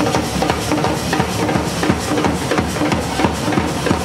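Wedding brass band playing a dance tune, a steady drum beat under a melody line.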